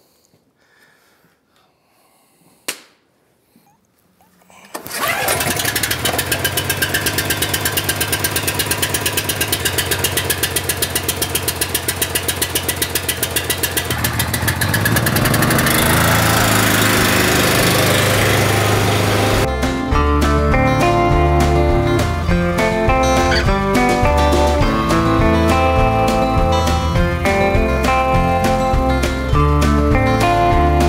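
The small gasoline engine of a BCS two-wheel walk-behind tractor, after a few quiet seconds and a click, starts suddenly about five seconds in and runs with a fast, even firing, after sitting about six months with only fuel stabilizer in the tank. Near twenty seconds guitar music takes over.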